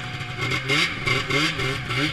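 Arctic Cat Firecat F7 snowmobile's two-stroke engine running at low speed, heard from the rider's seat, with three short blips of the throttle that raise its pitch each time.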